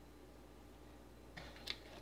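Near silence: room tone with a low hum. Near the end comes a faint rubbing and one light click as a finger presses on the hot-glued soap-bar partition in the wooden mold.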